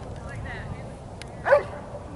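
A Doberman barks once, a single loud bark about one and a half seconds in, directed at the protection helper.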